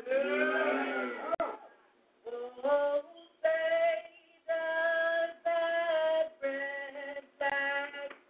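Singing: a voice holding long notes one after another, with short breaks between them.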